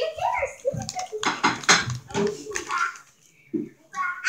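Indistinct talking, with a plastic potato-chip bag crinkling as it is handled for a moment about a second in.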